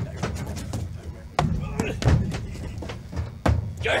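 Boots thudding on a hollow wooden stage platform, several heavy thuds over a few seconds, with voices underneath.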